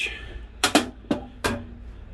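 Four sharp knocks and clicks, spaced unevenly between about half a second and a second and a half in.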